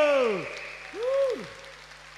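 A voice through the stage microphone ends a long held note with a steep downward slide, then gives a short rising-and-falling vocal swoop about a second in, over applause from the audience.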